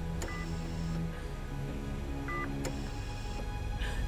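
Sustained, low dramatic underscore music with a bedside patient monitor's short two-tone electronic beep sounding twice, about two seconds apart.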